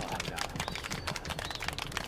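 Audience applauding: many hands clapping in a steady patter.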